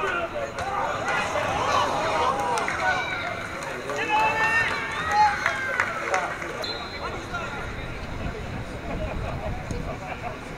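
Players and spectators shouting at a football match as a ball is played into the penalty area, with the loudest calls about four to five seconds in.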